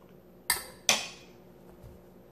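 A metal fork set down on a ceramic dinner plate: two sharp clinks, the first about half a second in and the second just under a second in, each ringing briefly.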